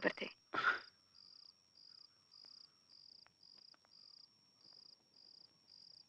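Faint crickets chirping: short, evenly spaced high chirps about twice a second over a thin steady high tone.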